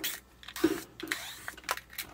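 Scattered clicks and knocks of hard plastic being handled as an air filter housing is taken apart, with a cordless drill set down on the bench.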